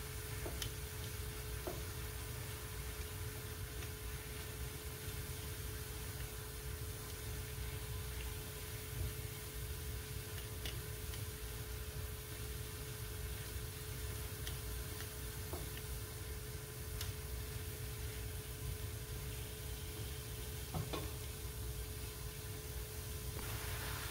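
Grated zucchini sautéing in butter in a frying pan, with a steady soft sizzle as the liquid it has released cooks off, and a silicone spatula now and then stirring and tapping against the pan. A faint steady hum runs underneath.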